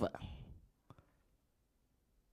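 A man's spoken word through a microphone trails off, then there is a single faint click about a second in, followed by near silence.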